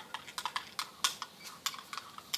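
Quick, irregular light clicks and clinks of kitchenware, small hard objects such as a spoon, cup or dishes knocking together.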